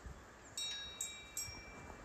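Three light metallic chime-like pings carried on the breeze, each ringing on with several clear high tones, over a faint low wind rumble.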